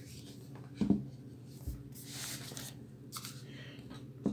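Comic books being handled and stood up on a wooden shelf: a knock about a second in, then a brief sliding rustle of covers.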